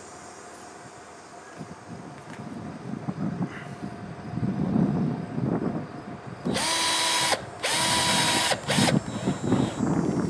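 Cordless drill driver driving a screw through a garage-door top seal: two runs of about a second each, then a brief blip, each with a steady motor whine. Low rustling as the drill and seal are handled comes first.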